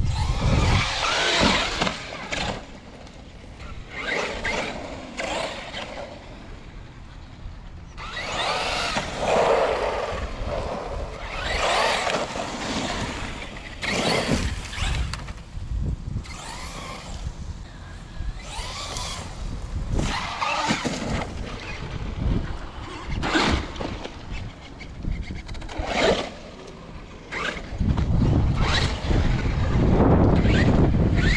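Large 8S brushless electric RC monster truck being driven hard over loose dirt and wood chips: repeated bursts of motor whine rising and falling as it accelerates and lets off, with wind on the microphone.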